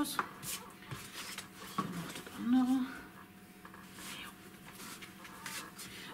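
Cardstock being handled and folded on a table: light rustling of paper with a few small taps and clicks.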